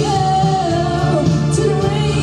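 A woman singing live into a microphone over musical accompaniment, holding a long note that bends down in pitch about a second in.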